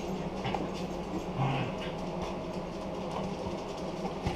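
A steady low background hum, with a few faint small knocks.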